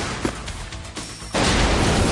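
Film explosion of a car: after a couple of sharp cracks over music, a loud blast sets in suddenly about a second and a half in and carries on with heavy low noise.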